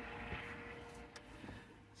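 Faint steady hum inside a car cabin, fading slightly, with one light click a little over a second in.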